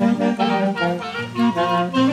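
Andean pasacalle music: wind instruments play a lively, quick-moving melody over a stepping bass line.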